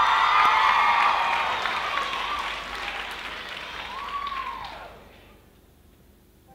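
Audience applauding, with some cheering voices, fading away about five seconds in.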